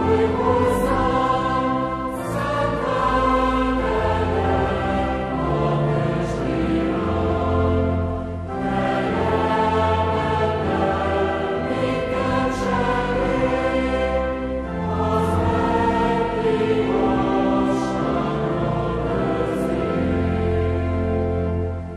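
Choir singing a slow hymn in long held phrases, with a sustained low bass underneath; the phrases break briefly about every six seconds.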